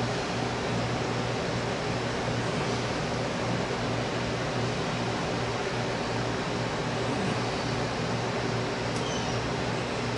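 A steady machine hum with a low droning tone and even background noise that does not change.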